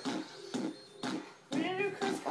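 Short snatches of a person's voice with quiet lulls between them, the loudest coming near the end.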